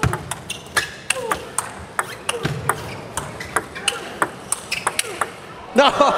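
Sharp, irregular clicks of a table tennis ball striking bats and bouncing on the table, a few per second.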